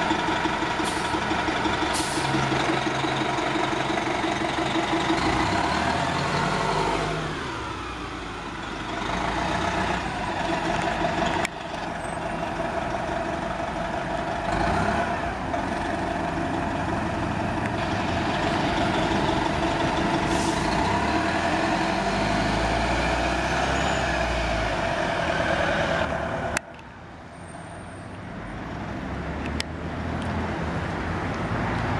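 A city transit bus's diesel engine running with a steady drone and whine. About seven seconds in the engine note sags and then builds again as the bus moves off. Near the end it cuts off suddenly to quieter street traffic.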